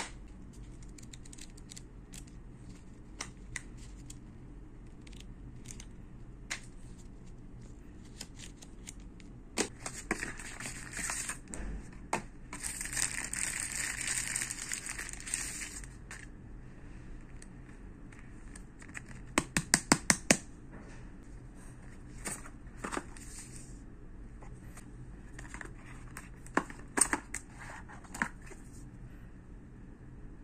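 Phone packaging handled close up: cardboard box inserts and paper sliding and tapping, with scattered light clicks. A few seconds of steady crinkling come near the middle, and a quick run of sharp clicks follows about two-thirds through.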